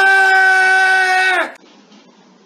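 A man's long, loud yell of one drawn-out word, held at a steady pitch for about a second and a half and then cut off sharply.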